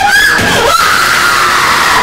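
A woman screaming and wailing in anguish: a short arching cry, then one long scream that slowly falls in pitch.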